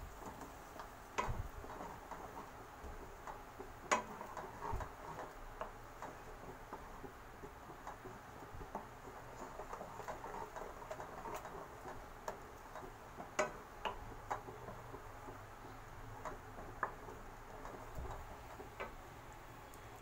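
Wooden spoon stirring a thick masala paste in a hot non-stick pan of oil: faint sizzling and scraping, with scattered sharp taps of the spoon against the pan.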